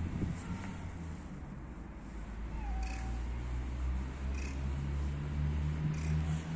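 A tortoiseshell cat meowing in a few short, faint calls, over a steady low hum that grows stronger in the second half.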